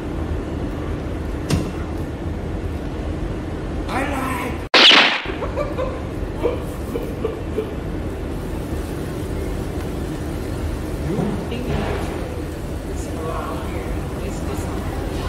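Steady restaurant background noise, a low rumble with faint scattered voices. Just before five seconds in the sound cuts out for an instant, then a short loud burst follows.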